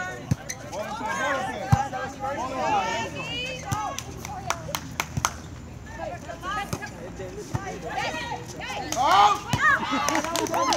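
Several voices calling and shouting over one another during a volleyball rally, with a number of sharp slaps of hands hitting the ball.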